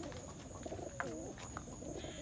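Domestic pigeons cooing: low, wavering coos from birds in the loft.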